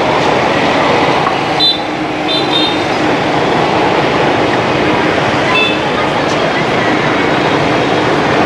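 Dense city street traffic, mostly motorbikes, running steadily and loudly. Short high-pitched beeps sound about one and a half to three seconds in and again about halfway through.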